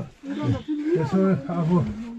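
A man's voice speaking close by, in a narrow rock passage.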